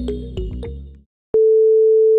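Background music fades out within the first second. After a short gap, a single steady electronic beep, one pure mid-pitched tone, sounds for about a second.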